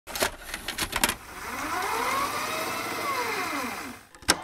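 Glitch-style intro sound effect: a few sharp static crackles and clicks in the first second, then a whooshing sweep whose pitch rises and then falls away.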